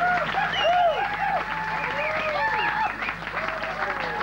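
Concert audience applauding, with a run of short shouts and whoops rising and falling over the steady clapping.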